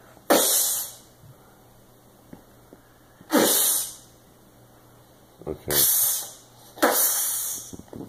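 A young child making hissing "pshh" sound effects with his mouth, four short bursts spread over the stretch.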